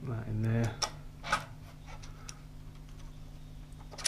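A short wordless vocal hum, then two sharp clicks about a second in as the DRO reader head and its bracket are handled against the scale bar, over a steady low hum.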